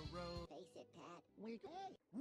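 Edited cartoon voice audio from a YouTube Poop: a held pitched tone, then a string of short chopped-up vocal syllables, about five, each bending in pitch, with a squawky, quack-like sound.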